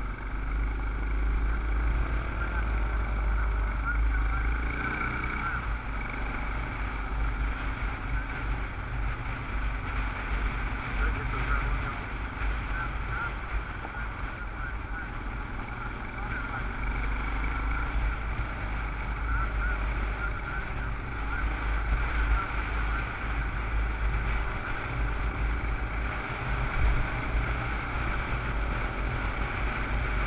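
Dual-sport motorcycle engine running steadily while riding a gravel road, heard from a helmet-mounted camera with wind buffeting the microphone as a constant low rumble.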